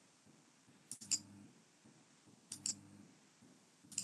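Faint computer mouse clicks in quick pairs, one pair about a second in and another a second and a half later, with a single click near the end. Each is followed by a brief low hum.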